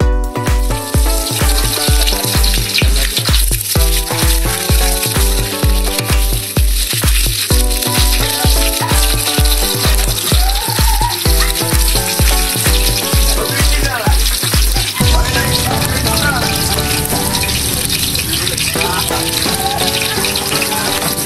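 Electronic dance music with a steady kick drum about twice a second, over garlic and onion sizzling in oil in a wok. The beat stops about three-quarters of the way through, leaving the frying sizzle.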